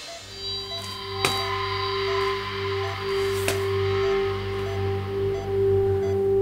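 Dramatic background music: low held notes sustained under the scene, with a sharp struck accent just over a second in and another a little past the middle.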